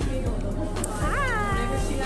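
A single high-pitched call about a second in, rising sharply and then falling away, over a low steady hum.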